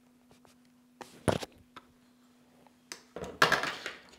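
Handling sounds from a fishing rod and reel as fishing line is pulled tight onto the spool and the rod is moved: a short knock and rustle about a second in, then a click and a louder rustling scrape near the end. A faint steady hum runs underneath.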